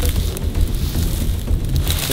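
Wind buffeting the microphone as a steady low rumble, with brief rustling and crackling of dry marsh grass as someone pushes into it.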